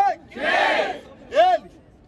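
Two loud shouted yells from the battle host and crowd: a long drawn-out one, then a short sharp one about a second and a half in, a hype call answered by the crowd.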